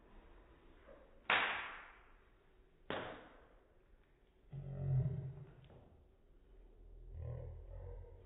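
A man coughing hard twice, about a second and a half apart, his throat irritated by a spoonful of dry ground cinnamon, followed later by low vocal sounds from him.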